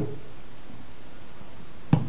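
Steady background hiss, with one sharp click near the end as the small neodymium magnets are pressed onto the bottom of the plastic bin.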